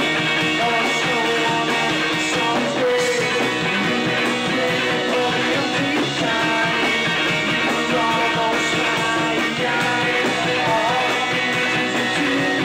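A live indie rock band playing a song: bass guitar, electric guitar and a Premier drum kit, with a singer's voice over them.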